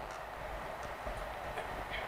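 Steady background hiss and low rumble with a few faint clicks, between lines of speech on a live call-in broadcast.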